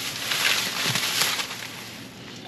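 Paper sandwich wrapper crinkling and rustling as it is folded closed, fading out after about a second and a half.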